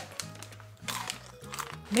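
Quiet background music: a low bass line stepping between notes, with a few faint clicks.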